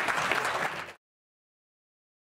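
Audience applauding, a dense patter of many hands clapping that cuts off abruptly about a second in.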